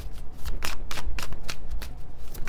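A deck of tarot cards being shuffled by hand, overhand: a quick, uneven run of card flicks, several a second.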